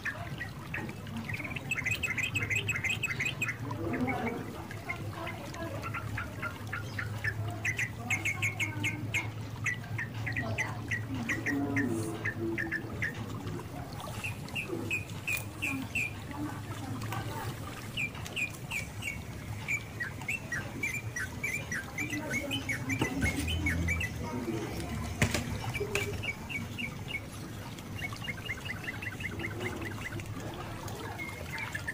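Small birds chirping in repeated quick runs of short high notes, with a steady low hum underneath.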